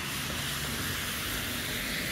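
Steady, even hiss of wet outdoor street ambience, with no distinct events.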